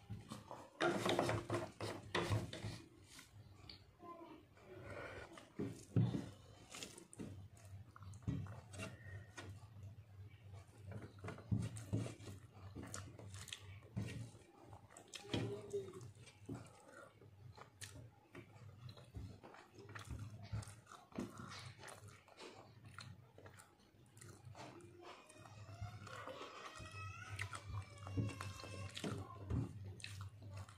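Close-up eating sounds: chewing and mouth smacks, with fingers working rice on a steel plate making short irregular clicks. A steady low hum runs underneath, and a pitched, voice-like sound bends up and down a few times near the end.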